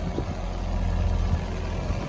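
A 6.2-litre LS3 V8 in a 2010 Corvette Grand Sport idling steadily.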